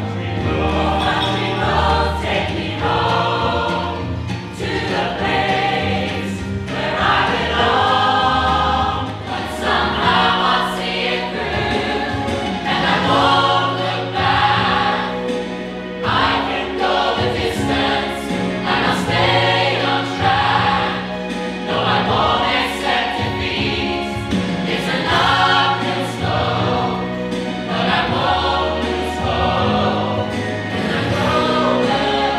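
Mixed choir of men and women singing in harmony, with a moving bass line beneath.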